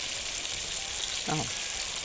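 Thick tomato slices sizzling steadily as they fry in oil in a pan, browning on one side before being turned.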